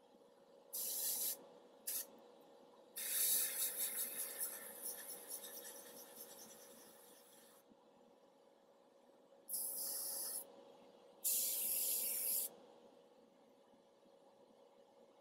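Airbrush spraying thinned paint in bursts of air hiss: five in all, one very short, the longest about four seconds and fading away.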